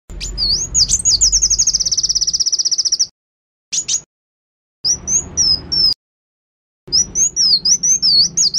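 Sunbird singing in high, thin notes: a wavering chirp that runs into a fast, even trill for about two seconds. Then, after dead-silent gaps, come a short burst, a phrase of up-and-down whistles, and more song near the end.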